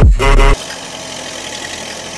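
Loud electronic music with a deep bass cuts off about half a second in, leaving a BULL backhoe loader's diesel engine running steadily.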